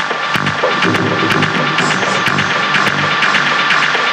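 Electronic dance music from a DJ mix, a techno-style track with a steady kick drum at about two beats a second.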